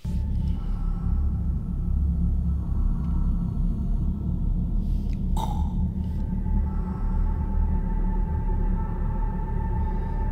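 Cinematic sci-fi score and sound design: a deep rumbling drone that starts suddenly, with held tones above it. About five seconds in, a short sweep brings in a steady high tone that holds to the end.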